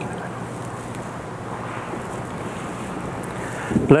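Steady background hiss with a low hum underneath: the room tone of the church's sound pickup. A man's voice begins right at the end.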